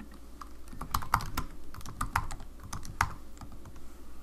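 Typing on a computer keyboard: a run of irregular keystrokes, some louder than others.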